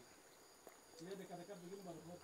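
Near silence, then a faint voice speaking quietly from about a second in.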